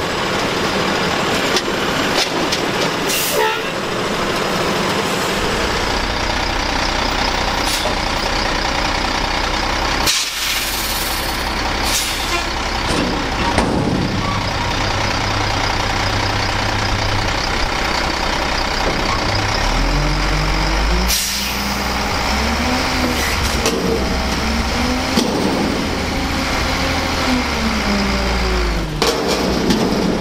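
Diesel garbage trucks at work: an automated side loader's engine and hydraulic arm running at the curb, then, after a cut about a third of the way in, a front loader's engine running and revving up and down repeatedly as its hydraulic arms lift a container over the cab. A few sharp metallic bangs from the lifting and dumping.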